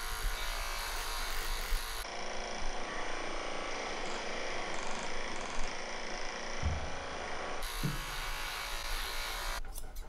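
Cordless electric pet clippers run steadily as they trim the fur around a dog's paw. Near the end the clipping gives way to a few quick snips of grooming scissors.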